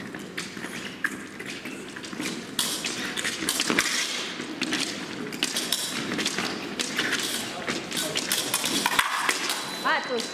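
Epee fencers' footwork and blade contacts during a bout: a run of irregular taps, knocks and thuds, ending with a sharp cry as the fencers close.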